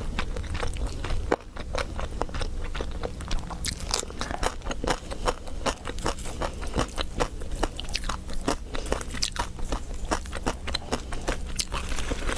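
Close-miked chewing and biting of roast chicken: a quick, uneven run of sharp crunches and mouth clicks.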